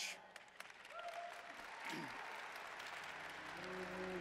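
Audience applauding, the clapping swelling over the first second and then holding steady.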